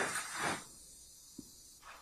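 A short breathy hiss in the first half second, then faint steady hiss from the played-back interview recording, with one small click a little past the middle.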